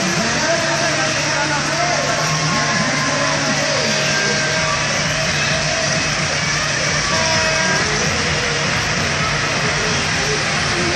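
Continuous loud fairground din: crowd voices mixed with engines running, with a steady low hum through roughly the first half.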